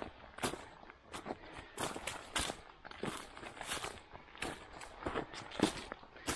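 Footsteps of a hiker walking on a narrow dirt track littered with dry leaves, about two steps a second.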